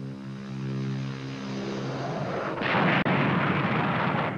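Film-soundtrack sound effects: a steady low hum for about two seconds, then a loud noisy roar that rises about two and a half seconds in, with a single sharp crack near three seconds.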